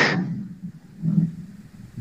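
The tail of a man's word, then a near-quiet pause with only a faint low sound about a second in: a lull in an online call while one participant's audio has dropped out.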